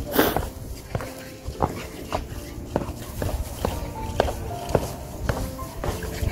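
Footsteps on wooden steps, short knocks about twice a second, with soft background music under them.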